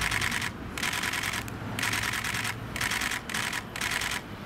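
Still-camera shutters firing in quick bursts of clicks: several short bursts, each under half a second, following close on one another.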